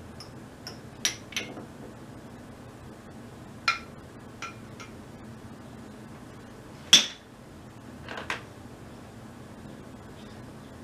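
Shot glasses clinking and knocking against a glass jar and the table as they are handled and dropped into a jar of Guinness for a double Irish car bomb: a string of sharp glassy clinks with a brief high ring, the loudest knock about seven seconds in.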